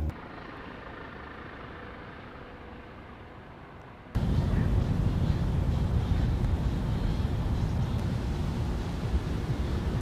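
A steady low rumble of outdoor background noise, with no distinct event in it; it jumps sharply louder about four seconds in and stays so.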